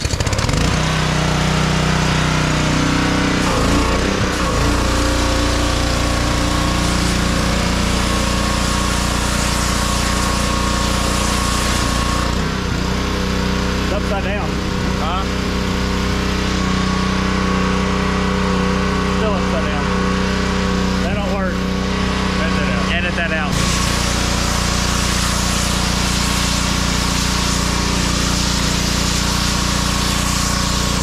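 Small gas engine of an M-T-M 3000 PSI pressure washer catching just as the sound begins, then running steadily under load while the wand sprays water, with a hiss over the engine note.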